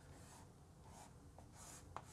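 Faint scratching of chalk drawn across a chalkboard, a few soft strokes in otherwise near silence.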